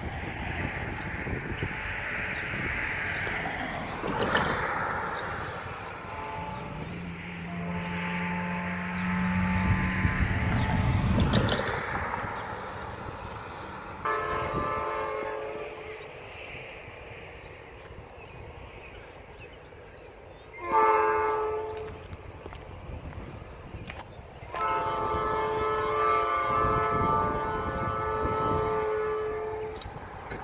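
Diesel freight locomotive air horn sounding the grade-crossing signal as the train approaches: two long blasts, a short one, then a final long one held to the end. The horn grows louder with each blast.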